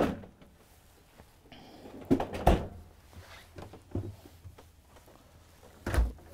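Samsung French-door residential refrigerator being shut: the bottom freezer drawer closes with two thuds about two seconds in, the second a deep thump, then a louder thud near the end as the doors are closed.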